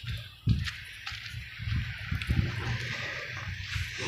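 Wind buffeting a phone's microphone: an uneven low rumble with a short bump about half a second in, and a hiss that swells in the second half.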